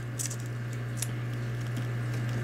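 Fingernail picking and scratching at the plastic protective film on a smartphone, a few short scratchy clicks over a steady low hum.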